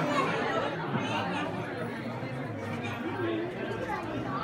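Several people talking at once: a steady hubbub of overlapping voices.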